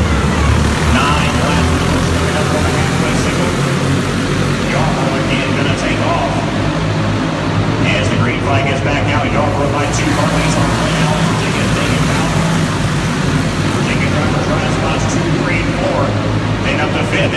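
A field of dirt-racing kart engines running together in a steady drone as the pack circles the track, with people talking over it.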